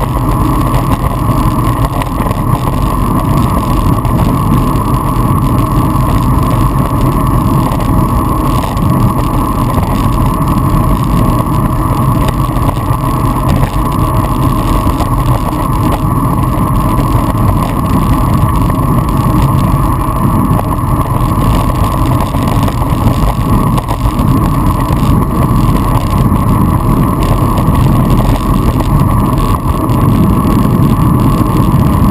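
Steady wind rushing over the microphone of a handlebar-mounted action camera on a moving road bike, mixed with tyre and road noise.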